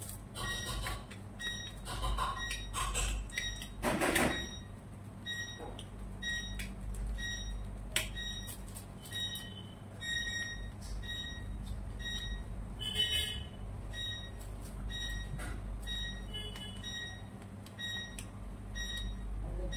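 Short high electronic beeps, repeating about once or twice a second, over a low steady hum. There is a brief rustle about four seconds in and a sharp click near the middle.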